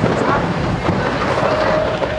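Blackpool illuminated tram running along the track: a loud, steady rumble with wind buffeting the microphone. A steady whine comes in near the end.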